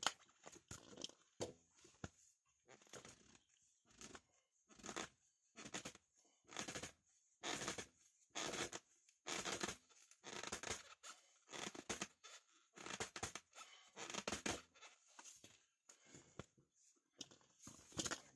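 Threaded plastic PVC fitting being screwed into a steel sump pump's discharge port: a run of short rasping scrapes, about one a second, as the pump is turned on the pipe and the threads bind.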